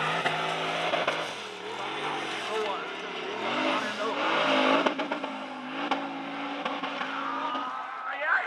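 Formula Offroad buggy's engine revving hard under full throttle on a steep sand hill climb, its note rising and falling with the throttle and wheelspin.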